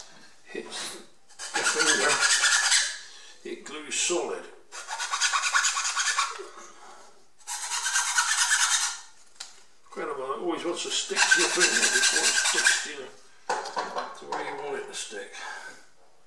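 Flat hand file rasping a small balsa wing part. The filing comes in several spells of quick back-and-forth strokes, each a second or two long, with short pauses between.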